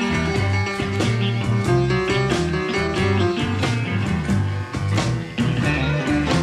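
Electric blues band playing an instrumental passage, guitar over bass and a steady drum beat.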